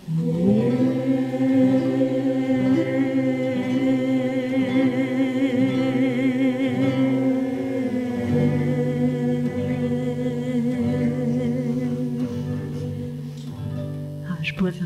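A group of voices, led by a woman at the microphone, singing long held notes together in harmony. The low part steps to a new note about eight seconds in.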